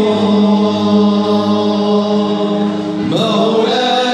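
Group of men chanting an Islamic devotional song (nasheed) in unison over a PA system. They hold one long note, then glide up to a higher note about three seconds in.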